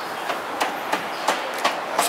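A cleaver chopping roast meat on a chopping board: about six sharp chops, roughly three a second, over steady street bustle.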